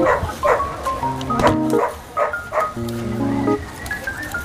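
Background music of electric-piano or keyboard chords. Over it come about six short bark-like calls, rising and falling, in the first three seconds.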